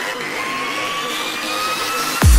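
Beatless build-up in a trance track: a synth sweep and noise rising slowly in pitch and swelling a little, with no drums.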